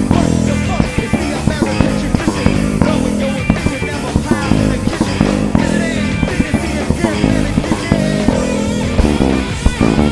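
An electric bass played direct into the recording with no amp, along with a rock band's drums and guitar in an instrumental passage. The bass is a Vintage LEST96 fitted with a Seymour Duncan SMB-4A pickup.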